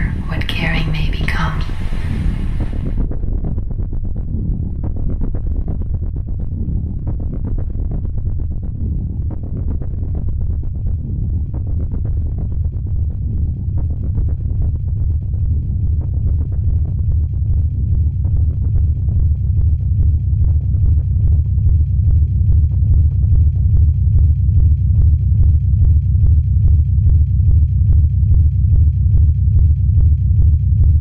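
Abstract sound-collage drone: a low rumble with fast, even pulsing that slowly grows louder. A voice is heard in the first few seconds.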